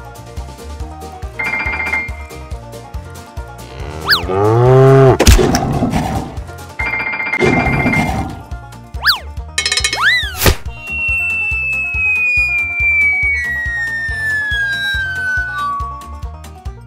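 Cartoon background music with sound effects: a loud cow moo about four seconds in, two short high ringing trills, quick springy boings, and from about ten seconds a long whistle that falls slowly in pitch.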